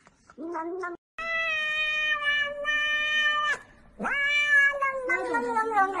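A cat meowing: a short call, then a long drawn-out meow held steady for about two and a half seconds, followed by more calls that slide down and waver in pitch.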